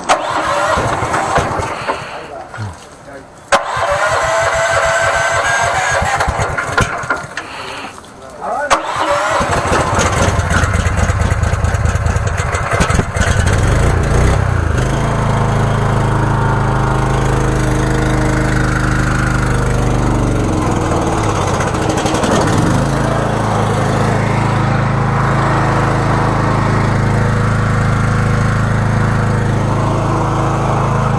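An engine cranked for several seconds, catching about nine seconds in and then running steadily with a constant low drone.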